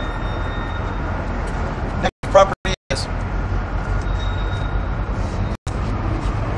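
Steady low rumble of road traffic, with a short burst of a man's voice about two seconds in. The sound cuts out completely for brief moments a few times.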